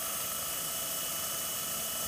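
Small electric motor spinning a clear plastic dish on a ball bearing through a rubber belt drive: a steady whirr with constant high whining tones.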